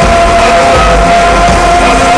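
Loud amplified live band music, heard from among the audience, with long held notes over a steady bass.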